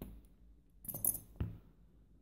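Small metal lock pins dropping out of a euro cylinder lock onto a rubber mat: a few light metallic clicks about a second in, then one sharper click.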